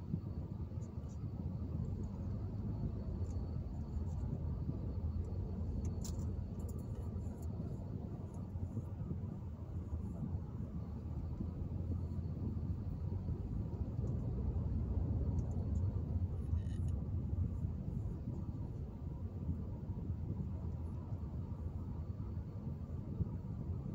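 Road noise inside a moving car's cabin: a steady low rumble of tyres and engine, with a few small clicks, the clearest about six seconds in.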